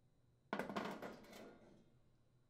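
Cast-iron burner grate set down on a gas range cooktop: a sudden clatter of several quick knocks about half a second in, dying away over about a second.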